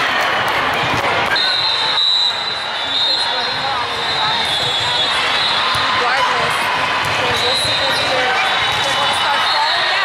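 Busy indoor volleyball hall: many voices from players and spectators overlapping, with volleyballs being hit and bouncing on the hard court, echoing in the large room. A thin steady high tone comes in about a second and a half in and carries on underneath.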